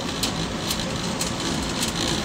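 Steady background noise of a large warehouse store, with a few faint clicks.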